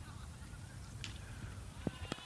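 Faint open-ground background, then near the end a single sharp crack of a cricket bat striking the ball cleanly, off the middle of the bat.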